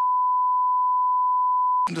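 A steady, single-pitch censor bleep over a televised conversation, masking a spoken word; it cuts off sharply near the end and speech resumes.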